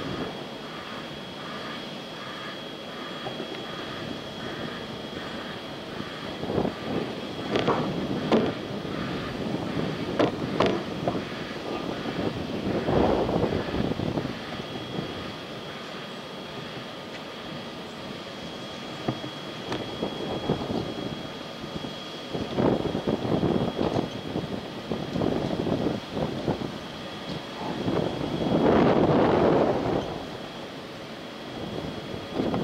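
Outdoor ambience at a factory: a steady thin high-pitched whine over a background hum, with a broad rushing sound swelling and fading several times, loudest near the end.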